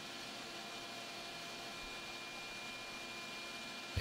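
Faint steady hiss with a light steady hum: shop room tone, with no handling knocks or tool sounds.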